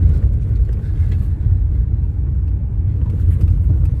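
A car driving on an unpaved dirt road, heard from inside the cabin: a steady low rumble of engine and tyres on the rough surface.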